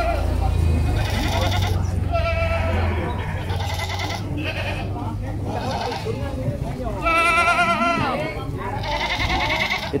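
Goats bleating several times in a row, each bleat with a quavering, wavering pitch; the loudest comes about seven seconds in.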